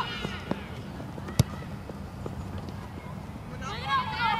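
Outdoor soccer-field background noise with a single sharp knock about a third of the way in. Near the end, spectators break into high-pitched shouts.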